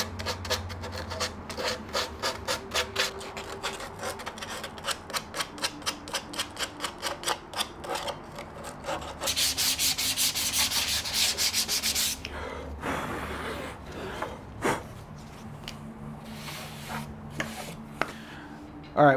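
Sandpaper worked by hand over carved Monterey cypress wood, finish-sanding after power tools. It starts with quick back-and-forth strokes at about three to four a second, runs into a few seconds of continuous, louder scrubbing around the middle, then tails off to a few light strokes.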